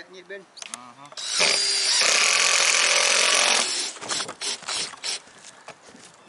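Cordless drill driving a screw into OSB roof sheeting, one loud continuous run of about two and a half seconds that starts a little after a second in, followed by a few light knocks and clicks.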